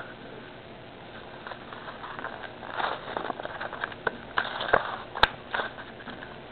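Foil wrapper of a trading-card pack crinkling and tearing as it is opened, the crackling bunched in the second half, with one sharp snap about five seconds in.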